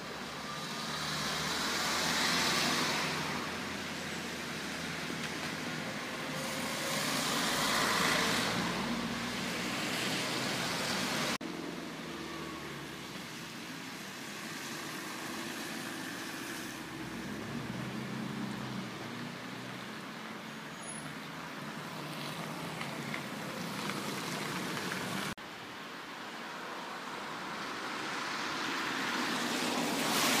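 Road traffic outdoors: cars passing by, their noise swelling and fading several times. The sound changes abruptly twice where the footage is cut.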